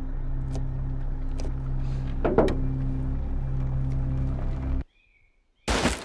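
A steady low hum, with a brief sound about two seconds in, cuts off abruptly just before five seconds. After a moment of silence, a single loud gunshot comes near the end, its bullet striking a tree trunk.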